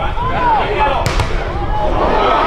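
A football struck hard and smacking into a player's body: a sharp double smack about a second in, among players' shouts on the pitch.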